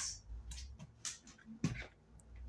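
A few light clicks and taps of plastic ping-pong balls being set down on a hard floor, the sharpest tap about three-quarters of the way in.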